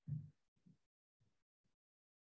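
Near silence in a pause between speech, with a brief faint low sound just after the start and a few fainter short blips in the first second or so.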